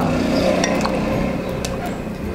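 A metal spoon clinking lightly against a ceramic mug a few times as a thick sweet bean dessert is spooned into it.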